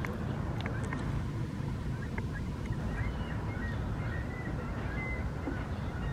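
Steady low outdoor rumble with a few faint, short high chirps in the middle.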